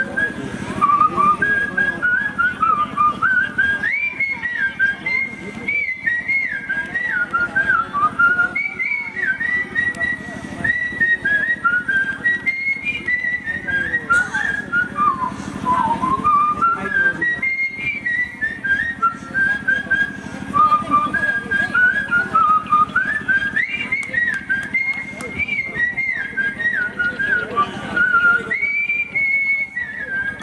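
A man whistling a folk melody into a microphone: one clear, high tune with quick trills and slides, its phrases returning every few seconds, over a low steady hum.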